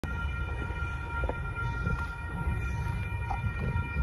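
Railroad crossing warning bell ringing steadily as the gates come down for an approaching train, over a low rumble of wind on the microphone.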